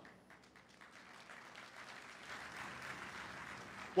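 Faint audience applause, many hands clapping, swelling gradually from about a second in.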